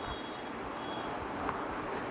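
Soft, steady rustle-like noise as fingers work through long hair to make a middle parting, close to a clip-on microphone.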